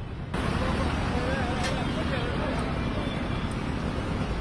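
Street ambience: a babble of voices over steady traffic noise, growing suddenly louder about a third of a second in.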